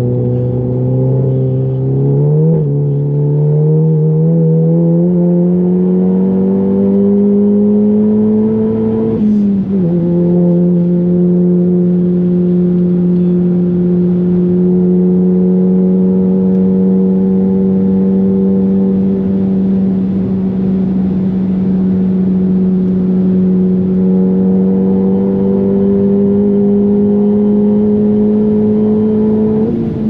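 Volkswagen Golf GTI's turbocharged four-cylinder engine accelerating hard, heard from inside the cabin. The pitch climbs, drops at quick upshifts about two and a half and nine and a half seconds in, then rises slowly through a long pull in a higher gear.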